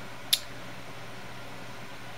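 Steady background hiss of a small room, with one short, sharp click about a third of a second in.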